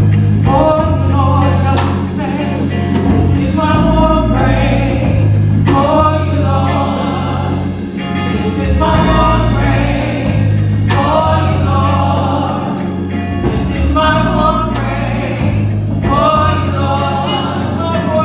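Gospel praise team of three women singing together into microphones over an accompaniment with a steady, deep bass line.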